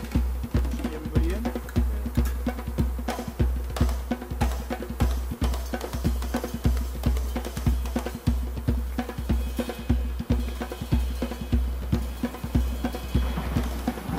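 Background music with a steady drum-kit beat.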